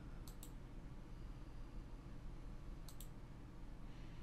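Computer mouse button clicks: two quick pairs of clicks, one just after the start and one about three seconds in, over a faint low room hum.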